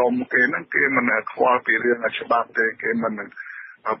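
Speech only: a newsreader talking in Khmer, with the thin, narrow sound of a radio broadcast and a short pause near the end.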